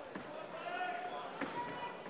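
Boxing ring sound with no commentary: a faint voice calling out from ringside, with two soft thuds in the ring, one near the start and one about a second and a half in.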